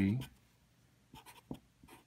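Felt-tip Sharpie marker writing on paper, a few short quick strokes in the second half.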